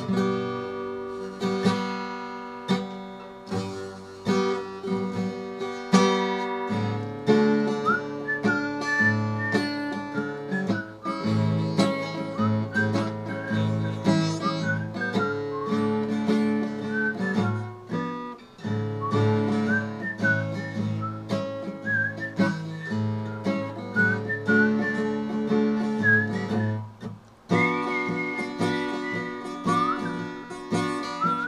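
Acoustic guitar played with picked chords and notes. From about eight seconds in, a whistled melody with short slides between notes runs over the guitar.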